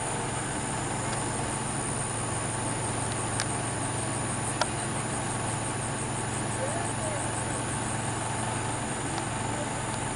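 Steady background hum and hiss with a faint, evenly pulsing high trill. Two short clicks come about three and a half and four and a half seconds in, the second the loudest.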